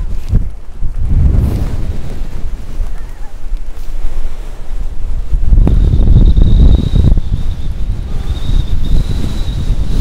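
Strong, gusty wind buffeting the microphone: a loud low rumble that surges and eases with the gusts. A thin, steady high whistle joins in a little past halfway.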